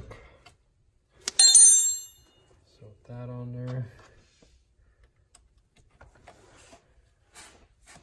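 A metal hand tool clanks sharply against steel with a brief high ringing, about a second and a half in, during work on the cotter pin in a tie-rod end's castle nut. A few faint clicks follow.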